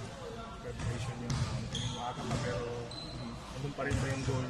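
Basketballs bouncing on a court in the background: a scatter of thuds, with a sharper knock about a second in and another near the end. Voices carry in a large hall behind them.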